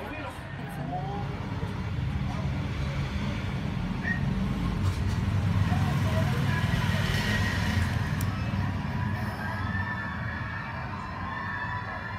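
Steady low background rumble, with faint distant voices coming through now and then.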